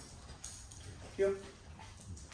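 A man's voice gives the dog command "heel" once, about a second in. Otherwise there is only faint room tone with a few light ticks.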